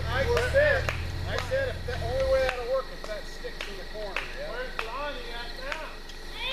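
Indistinct voices of several people talking over a low, steady vehicle engine hum that cuts off about two seconds in; a few sharp clicks.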